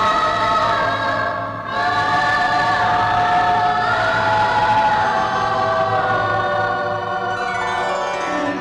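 Film background score with a choir singing long held notes that change pitch in slow steps, breaking off briefly a little under two seconds in before resuming.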